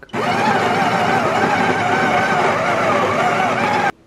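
Breville espresso machine's built-in conical burr grinder grinding coffee beans straight into the portafilter: a loud, steady motor-and-burr grinding noise that starts at once and cuts off suddenly near the end.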